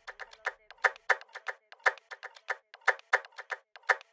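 Dembow instrumental beat in a stripped-down break: only quiet, clicky percussion hits in a quick syncopated pattern, about four a second, with no bass or kick drum.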